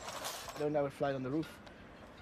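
A man's voice in two short utterances, followed by a few faint clicks.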